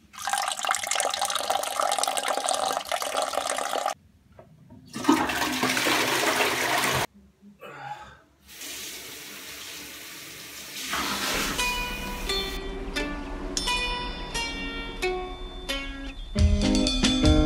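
Water running in a bathroom in short, sharply cut stretches: a toilet flushing and a tap running into a washbasin. About eleven seconds in, plucked acoustic guitar music starts over a low hum.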